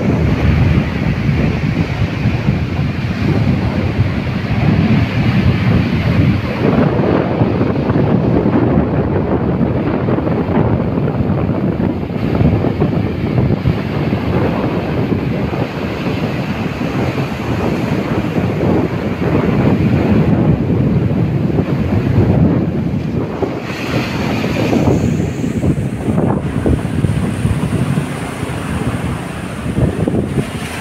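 Wind buffeting the microphone in a steady loud rumble, over waves breaking and washing up a sand beach.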